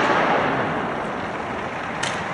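Starting gun for a 100 m hurdles race, its report echoing round a stadium and fading slowly into a steady wash of stadium noise as the field sprints off. A sharp knock comes near the end as the hurdlers reach the first hurdle.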